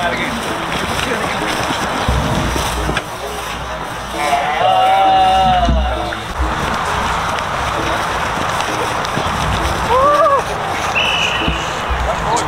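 Players shouting during a flag-football play, over a steady rushing noise: one long drawn-out call about four seconds in and another short call about ten seconds in.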